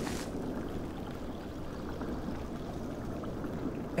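Underwater ambience: a steady low, watery rush, with a brief brighter swish right at the start.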